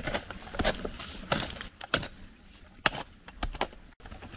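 Small hand pick striking and prying into a bank of crumbly shale and loose stone, about six blows roughly two-thirds of a second apart, each a sharp knock with rock clattering.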